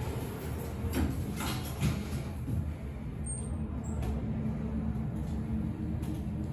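Steady low hum of a large indoor public space, with a few faint clicks early on and a brief high tone about three seconds in.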